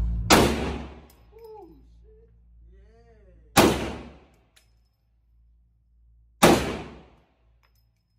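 Three single shots from a GLFA .458-calibre AR rifle, about three seconds apart, each with a short echo off the walls of an indoor range lane.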